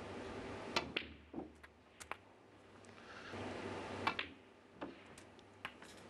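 Snooker balls clicking: the cue tip strikes the cue ball and it knocks into an object ball, followed by further sharp ball-on-ball and cushion knocks as the balls run around the table, the loudest pair about four seconds in.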